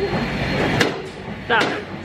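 Apple's Daisy iPhone-disassembly robot running with a steady machine hum. About a second in there is one sharp knock: the strike of its 'Bam Bam' hammer station, which knocks the battery loose.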